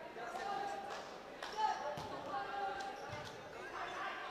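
A volleyball bounced a few times on the court floor by a server before serving, each bounce a sharp separate thud, over a background murmur of crowd voices.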